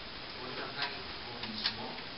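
A man lecturing into a microphone, his voice faint and distant, with a short sharp tick-like sound near the end.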